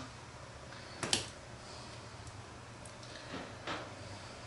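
Small handling noises from potting by hand: one sharp click about a second in and two softer ticks later, over a low steady hum.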